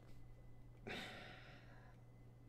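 A single breathy sigh about a second in, fading away over about a second, against near silence.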